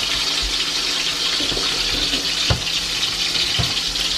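Seasoned chicken pieces browning in hot oil in an aluminium pot: a steady sizzle, with a couple of light utensil clicks in the second half.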